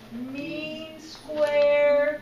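A high, sing-song voice drawing out a wordless sound, ending in one long held note near the end.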